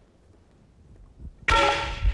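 A metal bell struck once about a second and a half in, ringing on with several clear tones that fade away.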